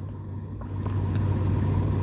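Low steady hum with some rumble, growing gradually louder.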